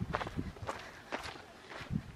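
Footsteps on a dirt trail: a handful of short, uneven steps.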